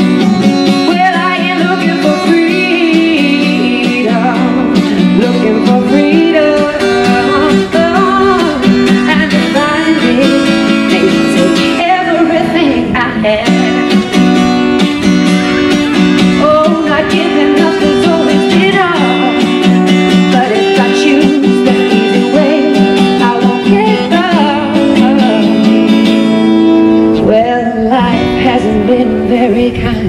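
Live band music during an instrumental break: an amplified electro-acoustic guitar plays a lead line with sliding, wavering notes over sustained backing chords.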